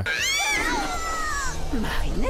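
A cartoon girl's high-pitched scream, rising and then falling over about a second and a half, as she topples off a high platform. A shorter, lower swooping cry comes near the end.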